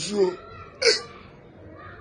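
A voice making short, wordless vocal sounds: a brief rising-and-falling cry at the start and a short, sharp exclamation about a second in.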